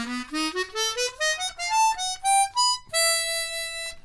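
Hohner chromatic harmonica playing a quick B7 flat-nine arpeggio, short notes stepping upward, ending on one long held note near the end.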